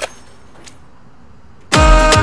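A short sharp click, then quiet room tone; near the end, loud electronic music starts suddenly, with deep bass notes that slide downward in pitch.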